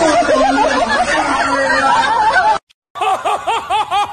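A man's voice singing and laughing in a wavering way over audience noise, cut off suddenly about two and a half seconds in. After a brief gap, a gull calls: a fast run of rising-and-falling yelping notes, about five a second.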